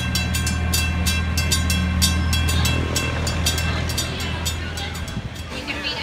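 A small amusement park train running past close by: a steady low engine drone with rapid clicking and clattering from the wheels and cars. It fades out about five seconds in.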